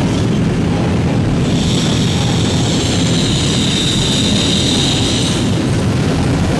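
A loud, steady rumbling roar: the background sound effect of the drilling complex in a 1970 TV soundtrack. A high hiss rides over it from about a second and a half in until about five seconds.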